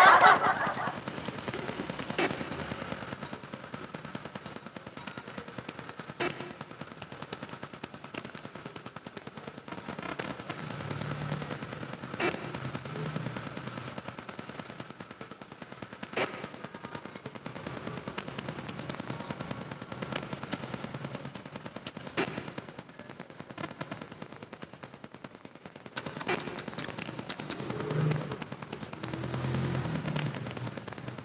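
Faint, rapid clicking throughout, with a single sharper click every four to six seconds.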